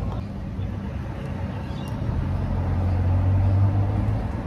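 Low, steady engine drone of a motor vehicle heard from inside, growing louder over the last two seconds.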